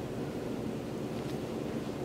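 Steady background hiss of room noise with no distinct events.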